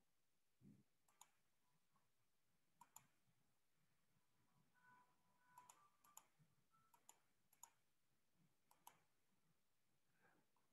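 Near silence broken by faint, sharp computer mouse clicks, about ten scattered through, some in quick pairs, as the screen share is switched.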